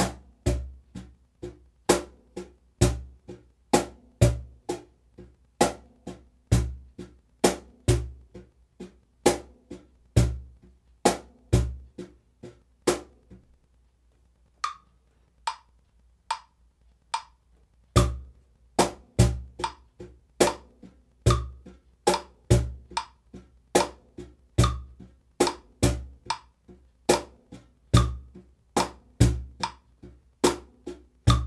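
Cajón played with bare hands in a steady eighth-note groove: sharp high tones on every half beat, with deep bass tones on beat one and on the off-beat of beat two. Near the middle the groove stops for a few seconds, leaving only a few light ticks, then starts again.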